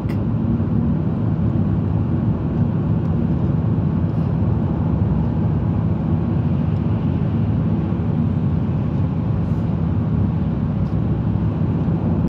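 Steady engine and tyre rumble heard from inside a truck cab cruising at motorway speed.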